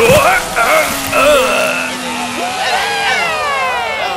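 A cartoon splash sound effect at the start, followed by wordless vocal exclamations and music, with a long falling glide in pitch in the second half.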